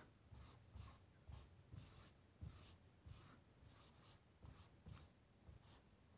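Faint, short strokes of a marker pen writing on a whiteboard, about two a second.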